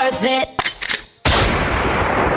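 Recorded dance-routine music mix cutting out about half a second in, a few quick clicks, then a sudden loud blast sound effect with a long fading hiss.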